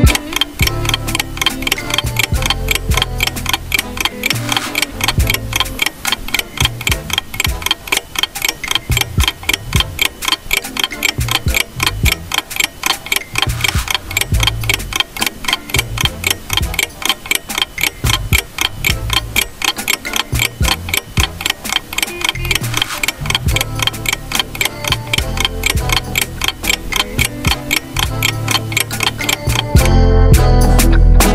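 Fast, regular clock-style ticking from a countdown timer sound effect, with a low bass line of background music underneath.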